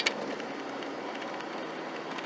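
Steady in-cabin engine and road noise of a Ford Ranger pickup pulling at part throttle around 2,200–2,400 rpm, its swapped-in 2.5-litre four-cylinder gaining speed. A brief click sounds right at the start.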